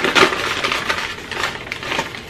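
Crinkly packaging being handled close to the microphone: a quick run of crackling, rustling crunches.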